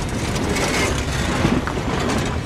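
Continuous rumbling roar of flames from a burning limousine just after it has exploded, with scattered crackles.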